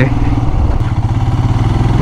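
Royal Enfield Himalayan's single-cylinder engine running steadily at low speed, a low even thrum heard from the bike itself.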